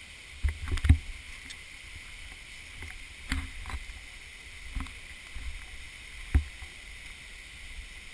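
Irregular footfalls and knocks from climbing a rocky, root-covered forest trail, loudest about a second in and again at about six and a half seconds. A steady high-pitched hiss runs underneath.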